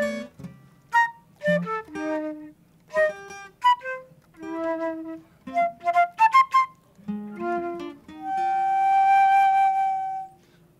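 Improvised flute playing over sparse plucked acoustic guitar: short, quick phrases of darting notes, then one long held note near the end.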